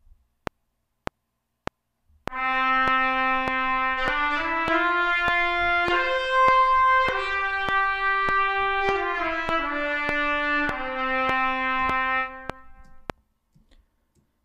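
Sampled solo trumpet playing a slow legato phrase that climbs stepwise, peaks about midway and falls back. Under it runs a steady metronome click about every 0.6 s, with four clicks counting in before the first note.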